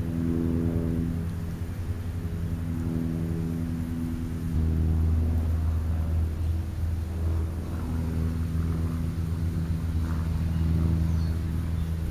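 A steady low motor hum, like an engine running nearby, with a pitched drone whose upper overtones come and go. It grows louder about four and a half seconds in.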